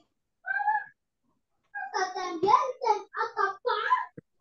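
Indistinct speech coming through a video call: a short vocal sound about half a second in, then a run of syllables from near the halfway point to the end.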